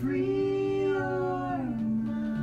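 A singer's long held note, sliding down in pitch near the end, over a sustained acoustic guitar chord: the close of a song performed live.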